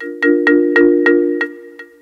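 Drum-triggered samplers playing a held chord: about six quick strokes, each a short chord of mallet-like tones that rings and fades, the later strokes softer.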